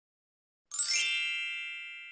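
A single bright chime sound effect about two-thirds of a second in: a short swish into a cluster of high ringing tones that fade slowly.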